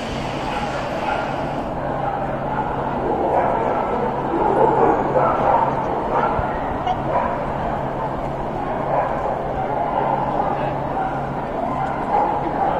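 A dog barking and yipping among the chatter of a crowded indoor hall, with a steady low hum underneath.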